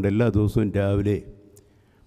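A man speaking, delivering a eulogy in a language other than English; his voice stops about a second in, leaving a near-silent pause.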